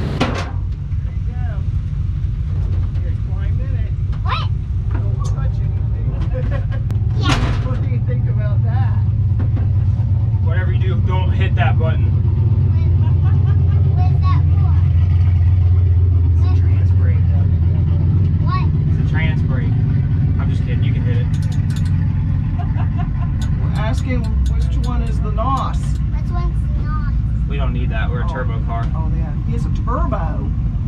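A vehicle engine idling steadily, a low rumble that grows louder in the middle and eases off later, with voices talking indistinctly over it.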